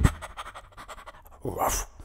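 The song's guitar chord dies away at the start; then, about one and a half seconds in, a dog pants briefly, a short breathy burst.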